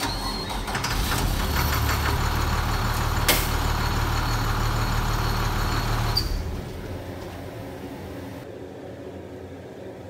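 School bus engine started with the key and running, with a sharp click about three seconds in, then shut off about six seconds in. It starts with the roof-hatch interlock wires cut.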